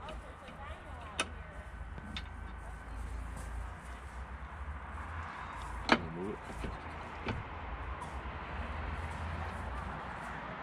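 A few sharp clicks and knocks from an aftermarket lower door and its mounting bracket being handled and bolted onto a Polaris RZR S door frame, the loudest about six seconds in.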